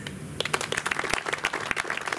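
Audience applauding: many hand claps starting about half a second in.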